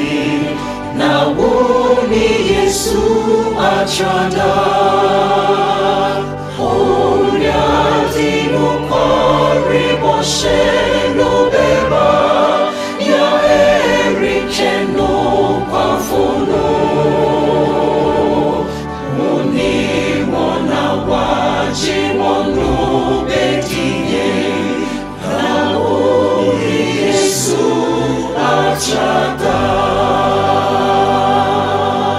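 A mixed choir of men's and women's voices singing a hymn in Twi, in sustained, slow-moving lines.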